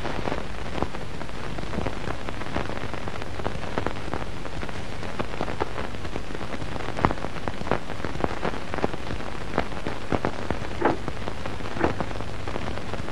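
Steady hiss with a low hum and irregular scattered crackles and clicks: the surface noise of an old, worn film soundtrack.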